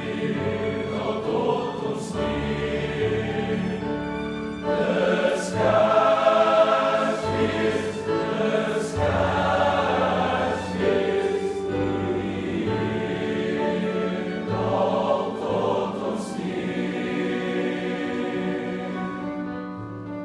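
A high-school boys' choir singing a Christmas carol with pipe organ accompaniment, the organ holding low bass notes beneath the voices. The singing grows louder about a quarter of the way in and tapers off near the end.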